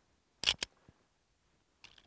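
Two sharp metallic clicks a split second apart, then faint ticks, from a Smith & Wesson 1911 E-Series .45 ACP pistol's action being worked to load it; the first round jams.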